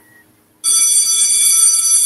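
Bell ringing as a sound effect, starting about half a second in and held as one steady, high, continuous ring: the school bell signalling the start of the next class.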